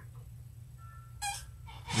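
A pause in conversation over a steady low hum, broken by a short sharp intake of breath about a second in and another breath just before speech resumes near the end.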